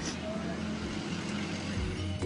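A vehicle engine running steadily, with low voices from a gathered crowd.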